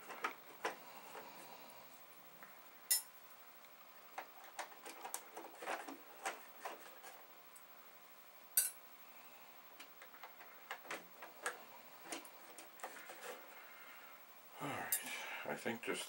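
Small screwdriver working tiny screws out of a VIC-20 keyboard: light scattered clicks and scrapes of metal on metal. Two sharper clinks come about three seconds in and again near nine seconds.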